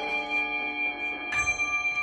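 Mallet-struck keyboard percussion with bell-like notes ringing on, and one new note struck about a second and a third in that rings out brightly.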